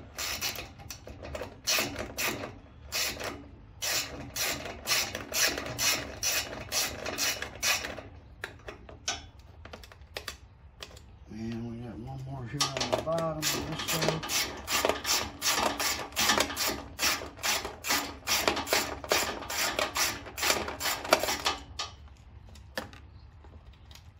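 Socket ratchet clicking in quick runs as 8 mm nuts are backed off a generator's air cleaner cover. A run lasts about eight seconds, then after a short pause a longer, denser run follows.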